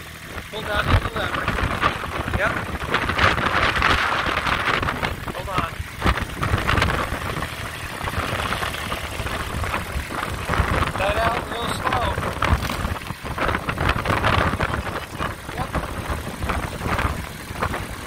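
Kubota compact tractor's diesel engine running at idle while the clutch is held in, with wind noise on the microphone and voices talking over it.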